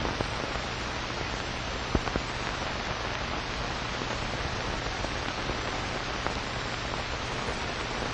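Steady hiss and low hum of an old kinescope film soundtrack with no program sound, broken by a faint click about two seconds in.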